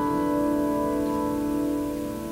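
Grand piano playing a slow passage, a chord held and ringing on with its notes slowly fading.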